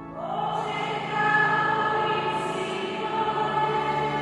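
Small church choir singing a hymn in long held notes; the singing comes in at the start and swells louder about a second in.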